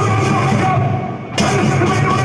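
Rock drum kit played hard over a heavy metal backing track. The cymbals drop out for a moment past the middle, then a loud hit brings the full kit back in.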